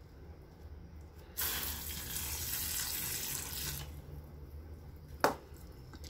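Water spraying from a handheld shower head onto the potting soil of a freshly repotted plant, the first watering after repotting. The flow starts about a second and a half in and stops abruptly about two and a half seconds later. A single short knock follows near the end.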